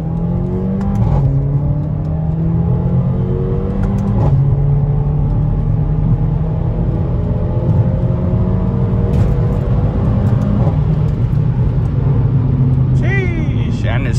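Mercedes-AMG CLA45's turbocharged four-cylinder engine accelerating hard, heard from inside the cabin. Its pitch climbs steadily and drops suddenly at each of three upshifts: about a second in, about four seconds in and about ten and a half seconds in.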